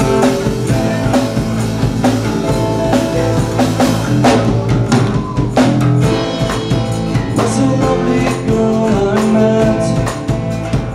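Live rock band playing a loud instrumental passage: acoustic guitars strummed over a drum kit, with cymbal crashes.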